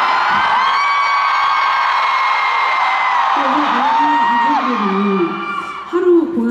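Concert audience screaming and cheering, with many high voices held in long shrieks. About halfway through a lower voice talks over the noise, and the screaming fades just before the end.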